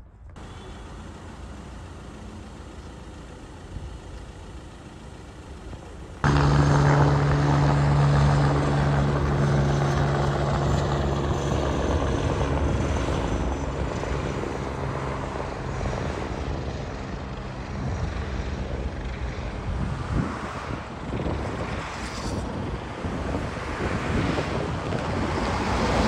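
Helicopter in flight overhead: a loud, steady drone of rotor and engine that starts abruptly about six seconds in and slowly fades. Faint outdoor background before it.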